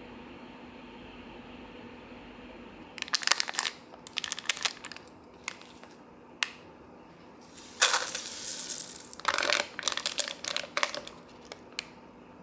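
A foil-lined plastic sachet of milk tea powder crinkling as it is handled and opened, starting about three seconds in, then a hiss of the powder being shaken out into a paper cup about eight seconds in, followed by more crinkling of the packet.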